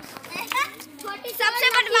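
Children's voices while playing, with a child's high-pitched voice calling out loudly from about one and a half seconds in.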